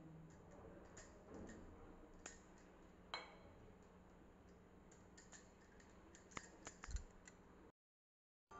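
Faint, scattered light clinks and clicks of a spoon scooping spiced filling from a small bowl and spreading it over rolled dough, over a low steady hum. The sound cuts out abruptly near the end.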